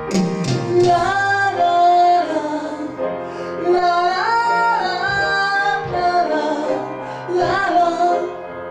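A solo singer's high voice singing a melody through a microphone and PA, with long held notes, over electronic keyboard accompaniment.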